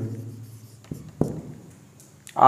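Marker pen writing a word on a whiteboard: faint rubbing strokes, with two sharp ticks about a second in.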